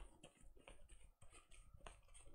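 Faint, irregular light clicks and taps, several in quick succession.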